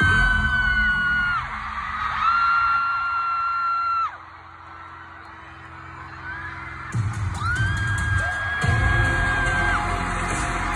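Concert fans screaming close by: three long, high, held screams over the arena sound system's heavy bass. The bass drops out about four seconds in and comes back in booming hits about seven seconds in.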